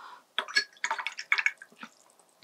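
Watercolour brush being rinsed in a glass jar of water: a quick run of small splashes and taps of the brush against the glass.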